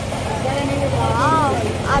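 Busy food-stall ambience: a steady low hum with background voices, one of them a short rising-and-falling call about a second in.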